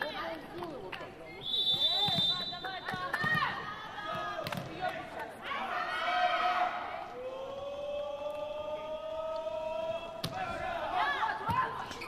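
Volleyball arena sound between rallies: spectators' voices and calls with scattered sharp knocks, such as a ball being bounced or clappers. A high steady whistle-like tone sounds for about a second and a half early on, and one long call rises slowly in pitch in the second half.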